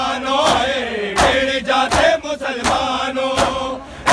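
Men chanting a Punjabi noha (Shia lament) in unison. Crowd chest-beating (matam) lands as sharp slaps in time, about every three-quarters of a second.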